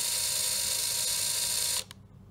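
LEGO Power Functions train motor in a 60098 Heavy-Haul Train locomotive running steadily with its wheels turning, driven from the Power Functions remote and powered by NiMH rechargeable AA batteries. It gives a steady whir that stops suddenly near the end as the remote is released.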